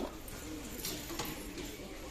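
Shop background noise with a light knock at the start as a drink can is taken from the shelf, and faint low, wavering pitched sounds under a steady hum.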